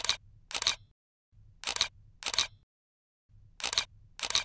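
Camera shutter sound effect: a pair of sharp clicks about half a second apart, repeated about every two seconds, with dead silence between the pairs.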